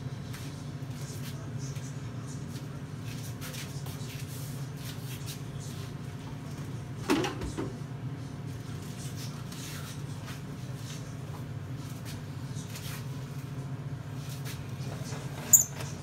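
Steady low hum with faint scattered ticks and crackles from the hot candy syrup bubbling in the pot; a knock about seven seconds in and a sharp click near the end.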